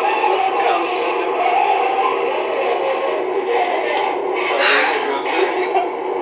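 Loud, steady background music and voices on the haunted-house footage's soundtrack, with a short shrill burst about four and a half seconds in.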